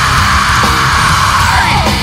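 Crossover metal song: distorted guitars, bass and drums under a long shouted vocal that breaks off near the end.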